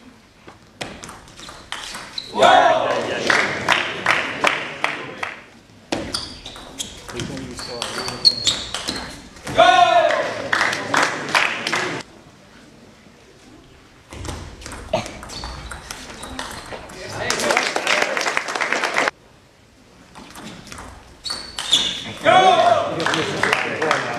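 Table tennis ball clicking off rackets and table in quick exchanges, in several rallies separated by short pauses. Loud voice shouts break in during the rallies.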